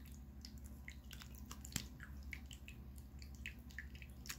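Small tabletop rock fountain trickling faintly, with light irregular drips and splashes of water over a low steady hum. A single sharp click a little under two seconds in.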